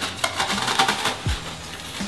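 Rustling and light crackling of evergreen sprigs and artificial magnolia stems being handled and pushed into a greenery arrangement, a run of quick small clicks in the first second or so. A single low thump comes a little past halfway.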